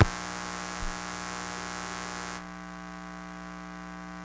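Steady electrical mains hum with hiss, left on the track of an archival film transfer after the film has run out. It opens with a sharp click, there is a soft thump about a second in, and the hiss drops away a little over halfway through, leaving the hum.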